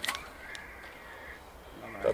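A bird calling faintly in the background, with a short sharp click near the start as the wire-mesh cage trap is handled.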